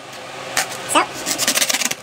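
Kitchen knife sawing through a foam pool noodle: a quick series of short rasping strokes, coming thickest in the second half.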